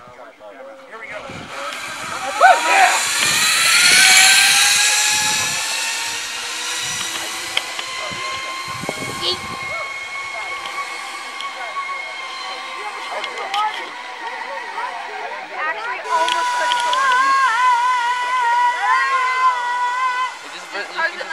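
Zip-line trolley pulleys whirring along the steel cable as a rider speeds down it. The whine climbs in pitch and is loudest as the rider passes close, about two to four seconds in. It then levels off into a steady whir as he travels away.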